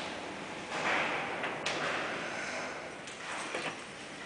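1951 Hütter freight elevator arriving at the floor: a rush of mechanical noise about a second in that ends in a sharp click, then a few knocks and clatters near the end as the hinged shaft door is opened.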